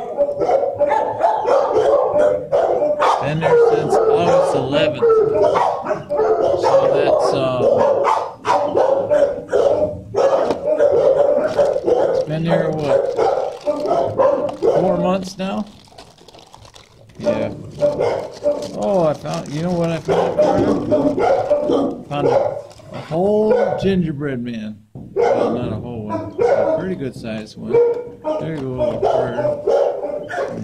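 Many shelter dogs barking and calling on and on in the kennel block, with a brief lull about halfway through.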